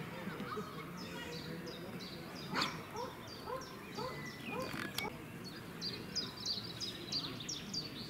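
A songbird calling in a long run of short, high chirps, about three a second, over a faint murmur of voices.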